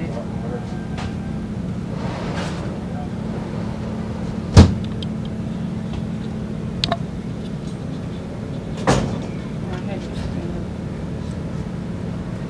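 Steady low mechanical hum throughout, with a sharp loud knock about four and a half seconds in, a short click near seven seconds and a smaller knock near nine seconds.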